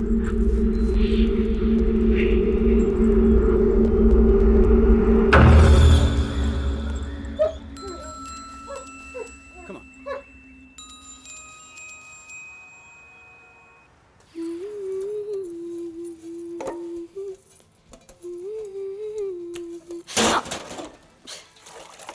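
Horror film score: a loud low drone that ends in a sudden hit about five seconds in, then sparse chime-like ringing tones, a soft wavering melodic line, and a sharp burst near the end.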